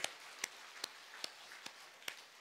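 One person clapping hands in a slow, steady beat, about two and a half claps a second.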